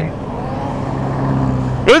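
A motor vehicle engine humming steadily on the road, slowly getting louder as it approaches.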